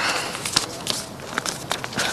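Irregular clicks and rustling over a steady hiss.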